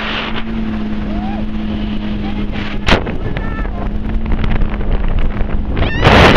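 Jet ski engine running at a steady pitch under heavy wind and water noise on the microphone, with one sharp knock about three seconds in.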